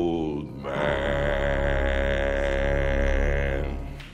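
A deep bass singing voice ends one held note and, about half a second in, takes up a long low note over a steady low instrumental drone, held for about three seconds and fading out near the end: the closing note of the musical theatre song.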